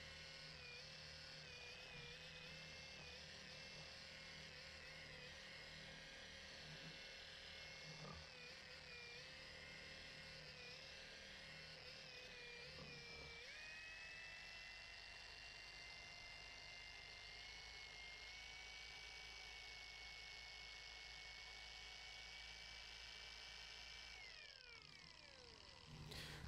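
Faint whine of a cordless dual-action polisher spinning a microfiber pad on a pad washer's ribbed wash plate. The pitch wavers as the pad is worked under load, then about halfway through steps up to a higher, steady speed, as for spinning the washed pad dry. Near the end it winds down and stops.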